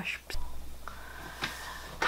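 A woman's voice trails off at the very start, then quiet room tone with a steady low hum and a faint, steady high-pitched tone.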